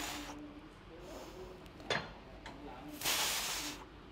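A woman breathing hard through her mouth while pulling seated-row reps to failure, with the loudest long exhale about three seconds in. A single click about two seconds in.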